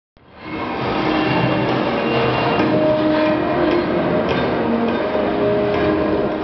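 Film soundtrack playing through cinema speakers: music over the steady hiss of steam from a steam locomotive, cutting in suddenly at the start.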